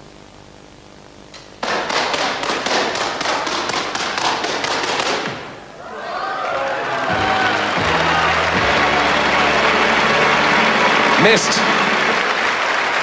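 A rapid string of sharp clacks and thuds begins suddenly about a second and a half in and runs for some three seconds: a chain of crossbows firing one after another. After a brief lull, an audience applauds and cheers over music.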